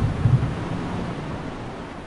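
Low storm rumble that gradually fades away.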